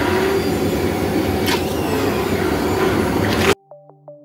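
Electric stick blender running steadily as it mixes a bucket of liquid glaze. It cuts off abruptly near the end, and synth music comes in.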